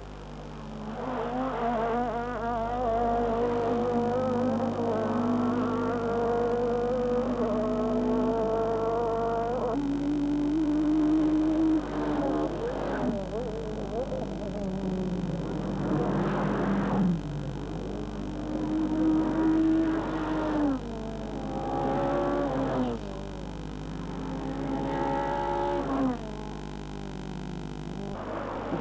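Racing saloon car engines running at high revs. Their note is held and slowly rises for a few seconds, then slides or drops down in pitch, about six times over, as cars pass or change gear.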